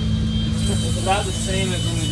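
A steady low mechanical hum under brief snatches of a man's voice.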